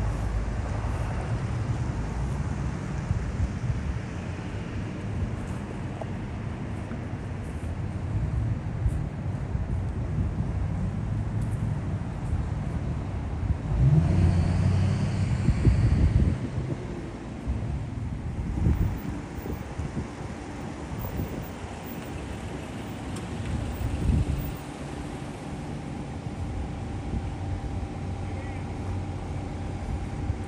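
Low, steady rumble of a motor vehicle running, which swells louder for a couple of seconds about halfway through.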